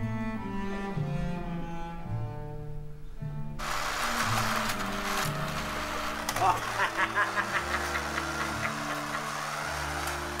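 Double basses playing a slow bowed passage. About three and a half seconds in, the clatter of a tabletop ice hockey game comes in over the low music still playing underneath: from about six and a half seconds, a run of sharp plastic clicks, about four a second, as the rods and players are worked, with a short laugh at the start.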